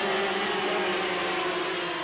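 A group of 250cc two-stroke Grand Prix racing motorcycles running at high revs along a straight, their engine notes held steady and fading slightly as they pull away.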